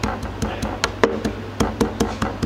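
Metal meat-tenderiser mallet pounding a red eye fish head on a cutting board, a quick run of wet taps at about five a second. The hard parts of the head are being broken down to soften the bait.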